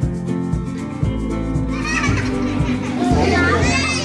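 Music with a steady beat; about halfway in, several young children's voices come in over it, chattering and calling out in high, excited tones.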